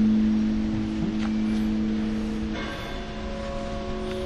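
Background music of sustained, droning held notes, with a change to a new, higher chord about two and a half seconds in.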